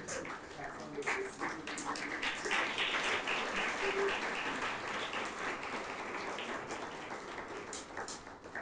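Audience applauding, a dense patter of many hands that builds about two seconds in and thins out toward the end.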